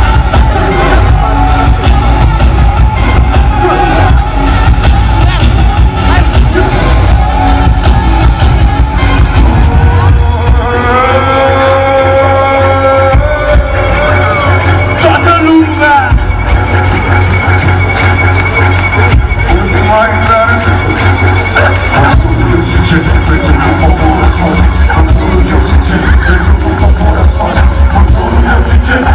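Live band music played loud through a concert PA: a heavy bass beat with vocals. About ten seconds in the beat thins for a few seconds under held notes, then comes back.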